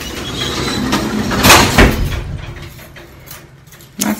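An old elevator's collapsible metal scissor gate being slid shut, with a loud rattling clank about a second and a half in, after which the sound dies away.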